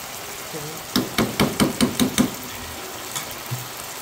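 A metal spoon tapped rapidly against the rim of a cooking pan, about seven sharp knocks in just over a second, shaking off clinging yogurt marinade.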